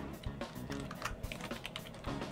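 Typing on a computer keyboard: a quick run of separate key clicks as a word is typed, with quiet background music underneath.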